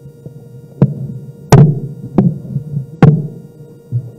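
Handheld microphone being handled at a podium: four sharp thumps about three-quarters of a second apart, the second and fourth loudest, each with a short low boom. A faint steady hum runs underneath.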